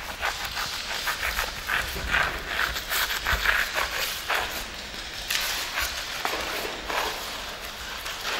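A hand-held sponge scrubbed back and forth through wet paint on a rough concrete floor: a rasping scrub with each stroke, about three strokes a second in an uneven rhythm.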